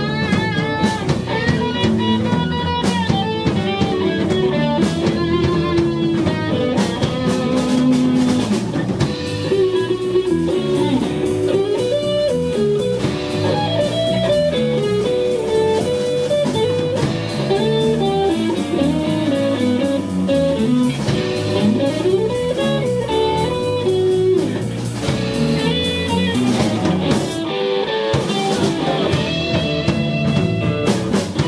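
Live band playing an instrumental passage on electric guitars, bass guitar and drum kit, the lead guitar line sliding and bending between notes.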